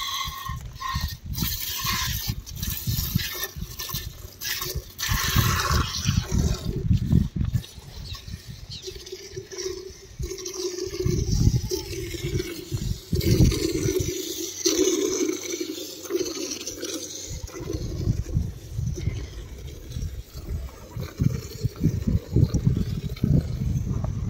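Milk squirting in repeated spurts into a plastic jug as a cow is milked by hand.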